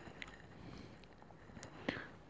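Faint ballpoint pen writing on a paper page: light scratching with a few short sharp taps, the sharpest near the end.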